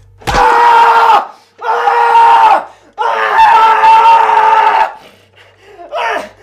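A man screaming in pain three times, long loud screams, the last held about two seconds, with a short thump as the first one begins: a bound prisoner crying out under torture.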